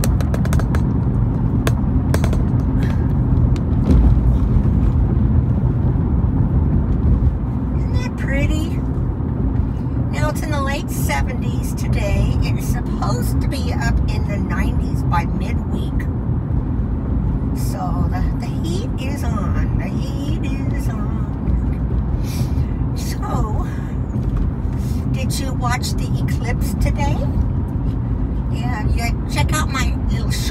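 Steady road and engine noise inside a moving car's cabin, with a faint voice coming and going over it from about eight seconds in.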